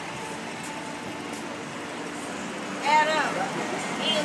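Street traffic noise with a steady low hum. About three seconds in, a brief loud shouted voice breaks in.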